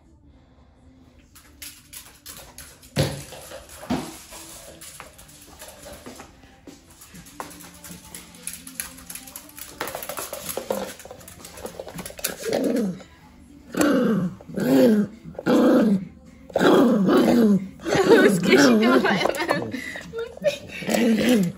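A small dog barking in a series of loud bursts during the second half, during play over a ball toy. Earlier there are a couple of sharp knocks, like the thrown ball hitting the wood floor.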